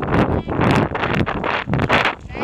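Wind buffeting a helmet camera's microphone as a pony canters over a sand arena, its hoofbeats coming through as repeated surges of noise.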